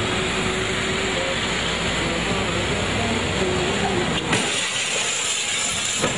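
Busy street traffic: a steady, dense noise of vehicle engines and tyres. A single knock comes about four seconds in, after which the low rumble drops away.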